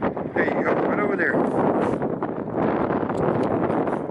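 Strong wind buffeting the microphone, a loud continuous rumble.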